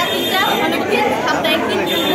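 Speech only: a woman talking, with other voices chattering around her.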